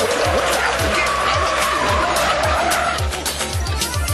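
Cartoon sound effect of racing bikes speeding away from the starting line: a loud rush of engine and skid noise that eases off about three seconds in. Background music with a steady low beat plays underneath.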